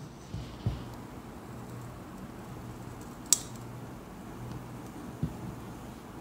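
Custard mix poured from a blender jar onto hardened caramel in a stainless steel flan pan, a faint steady pour with a few soft knocks. About three seconds in comes one sharp little crackle: the set caramel cracking as the custard hits it.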